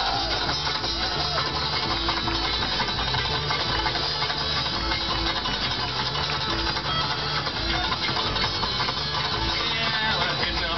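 Live bluegrass string band playing an instrumental break: fiddle, banjo and a plucked string instrument over a walking upright bass line.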